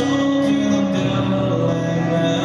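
Live acoustic country music: a steel-string acoustic guitar played together with a resonator guitar laid flat on the lap, with long held notes.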